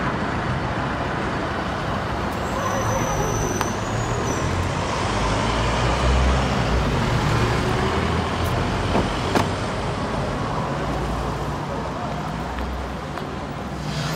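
Steady road traffic noise, a continuous low rumble of passing vehicles, with a couple of sharp clicks about nine seconds in.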